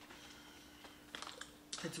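Faint small plastic clicks as a water bottle's screw cap is twisted shut and the bottle is handled. The clicks come in a quick cluster in the second half, over a faint steady hum.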